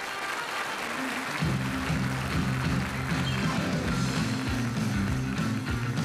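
Audience applause over the first moments, then about a second and a half in a rock and roll band kicks in with a driving instrumental intro: electric bass, guitar and drums in a steady, repeating rhythm.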